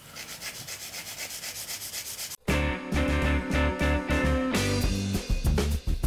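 A hand nail file scraping in quick, even back-and-forth strokes as it shapes the tip of a long gel stiletto nail into a point. About two and a half seconds in, the sound cuts out and loud background music with a heavy bass beat takes over.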